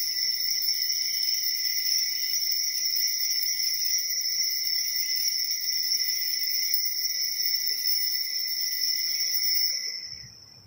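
Hand-held altar bells shaken without a break by an altar server, a steady high ringing that stops near the end and dies away. The ringing marks the elevation of the host at the consecration.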